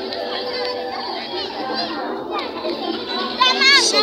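Many children's voices calling and chattering over one another outdoors, with louder high-pitched calls near the end.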